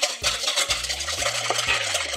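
Spatula scraping and stirring thick condensed-milk mixture around a stainless steel bowl, a steady scraping with a few light clicks against the metal.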